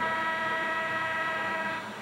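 Arena buzzer horn sounding one steady blast of almost two seconds, then cutting off: the signal ending a timeout.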